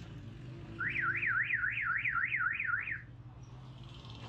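An electronic siren tone of the car-alarm kind, warbling rapidly up and down about four times a second for about two seconds, starting just under a second in, over a steady low hum of street traffic.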